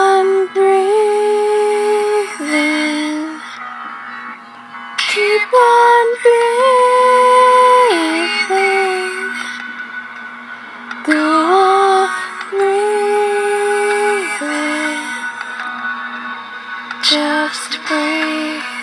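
Song with a sung voice holding long notes that step down in pitch, in four phrases with short gaps between them, over a steady sustained backing tone.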